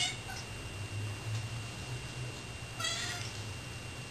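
Domestic cats meowing for tuna: a short meow at the very start, a faint chirp just after it, and a longer meow about three seconds in, over a steady low hum.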